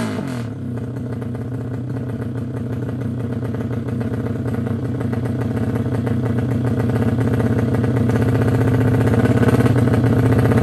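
Drag bike's engine running at the start line: its revs fall away in the first moment, then it holds a steady fast idle that slowly grows louder.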